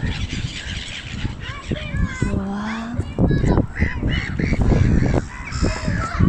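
Waterbirds, gulls and ducks among them, giving several short calls over a steady low rumble.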